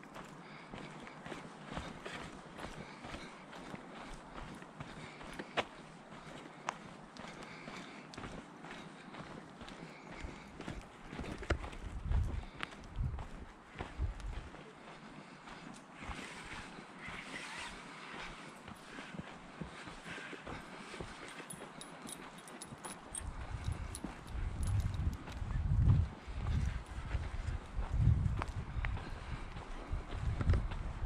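Footsteps walking on a dirt forest trail, a steady patter of small crunches and clicks. Low thumps and rumbles hit the microphone for a few seconds past the middle and again through the last several seconds.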